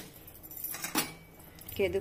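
A few sharp metal clinks of a long metal spoon against an aluminium pressure cooker as stirring of the rice mixture begins.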